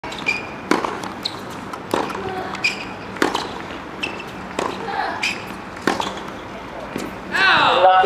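Tennis rally on a hard court: a tennis ball struck by rackets every second or so, with ball bounces and short shoe squeaks between the hits. A voice speaks near the end.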